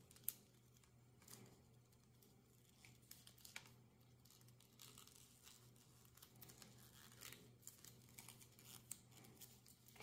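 Near silence with faint scattered clicks and rustles from a leather belt being handled as its loop is folded over, with one sharper click just after the start.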